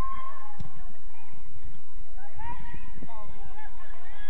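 Distant shouting voices of players calling across a football pitch, short bending calls that come and go, over a low, uneven rumble.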